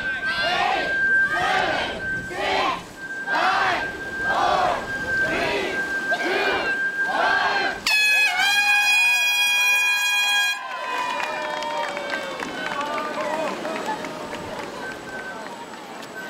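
A crowd calls out in unison about once a second, then a loud air horn sounds for about two and a half seconds as the start signal. Cheering and mixed voices follow.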